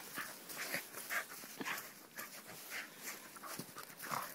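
Two Pyrenean Shepherd dogs play-wrestling in snow: faint scuffling and short noisy sounds, a few each second.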